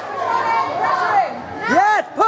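Ringside spectators shouting at a kickboxing bout: a few high-pitched calls, the loudest near the end.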